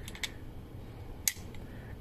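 A steel crimping die seating in the jaw of a Solsop ratcheting crimper, where a spring-loaded ball-bearing detent holds it: a couple of light clicks at the start, then one sharper click a little past a second in.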